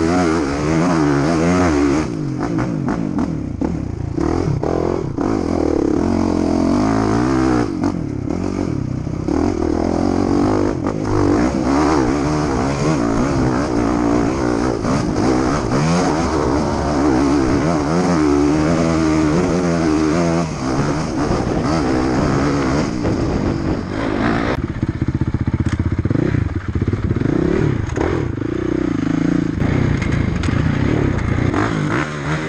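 On-board sound of a Honda enduro dirt bike's engine ridden hard over dirt trails, its revs rising and falling constantly with throttle and gear changes.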